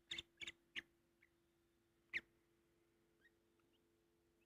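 Faint, short peeps from a young lovebird chick: several quick ones in the first second and a slightly louder one about two seconds in, over a faint steady hum.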